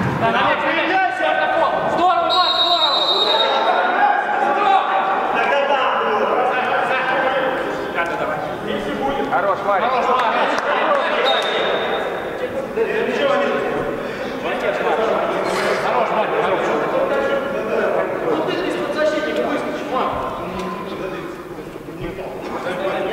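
Players' voices calling and shouting across an indoor football hall, echoing, with the ball being kicked and bouncing on the artificial turf. A brief high whistle sounds about two seconds in, and a shorter one a little past the middle.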